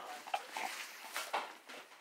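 A baby fussing with a few short whimpers, mixed with rustling and handling noise as he is picked up.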